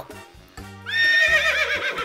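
A horse whinny sound effect: a high call comes in about a second in, holds briefly, then breaks into a quavering whinny. Background music with a low bass line plays under it.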